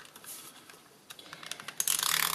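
Snail tape-runner adhesive clicking and ratcheting as it is run along a strip of paper, laying down double-sided tape. A string of small clicks that thins out about halfway through and picks up again near the end.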